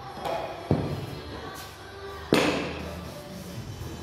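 Bumper plates knocking and clanking on a barbell sleeve as the weight is changed: a sharp knock under a second in, then a louder, ringing clank a little past two seconds in, over background music.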